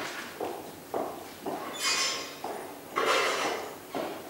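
Footsteps at a walking pace, about two a second, with two short hissing rustles near the middle.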